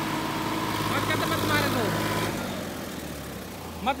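Farm tractor's diesel engine running under load as it pulls on a tow rope to drag a stuck SUV out of mud. It is steady, then eases off and grows quieter a little over halfway through, with faint distant shouts.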